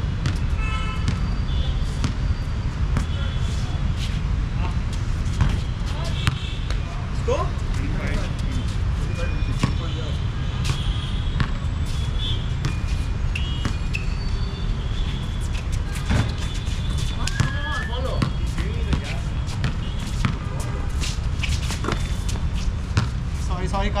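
Pickup basketball game: the ball bounces and thuds at irregular intervals, with short high squeaks and players' distant calls, over a steady low rumble.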